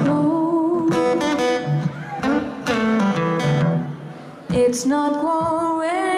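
Live acoustic music: a woman singing over acoustic guitar accompaniment. The loudness drops briefly about four seconds in, then the song picks up again.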